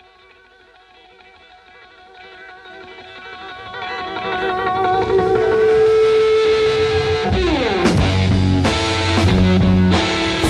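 Rock song intro: a sustained, wavering electric guitar note swells in over about five seconds, slides down in pitch about seven seconds in, and then the full band comes in with drums and bass.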